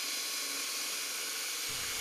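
Cordless drill with a mixing paddle running steadily, stirring epoxy in a plastic bucket: an even, hissing whir.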